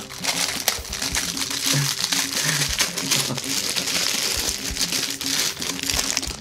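Thin clear plastic packaging bag crinkling steadily as it is torn open with teeth and hands.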